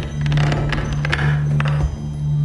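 Music with a steady low drone, over which wind chimes clink with several light strikes.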